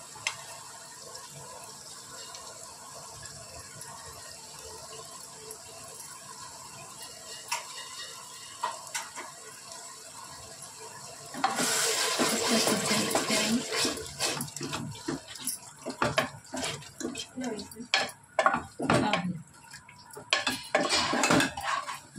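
A wooden spoon stirs yogurt into minced meat in a pressure cooker, in irregular wet scraping strokes against the pot that begin about halfway through. Before that there is only a faint steady hiss with a few light taps.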